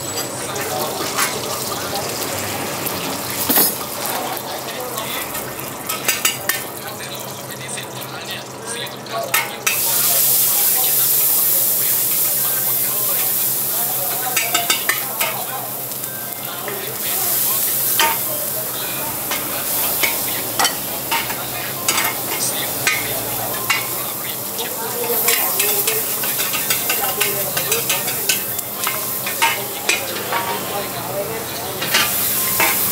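Food stir-frying in a large wok, sizzling, with the metal ladle clinking and scraping against the pan many times. The sizzle swells loud about ten seconds in and again later, then eases back.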